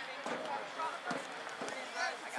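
Overlapping, indistinct voices of spectators and players calling out during a soccer match, with a few short knocks mixed in.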